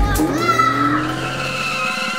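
Tyre-screech sound effect of a car braking hard: a sustained squeal starting about half a second in.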